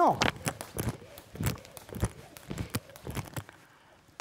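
Skipping rope with alternating feet: the rope and light footfalls tapping the floor in a quick, even run that dies away near the end.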